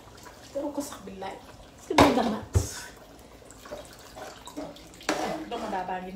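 A pot of sauce simmering and bubbling on the stove, with a sharp knock about two seconds in. A woman talks in short bursts over it.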